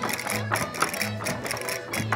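Live Portuguese folk dance music played by a rancho folclórico band: plucked strings over a repeating bass line, with rapid, sharp clicking percussion keeping the beat.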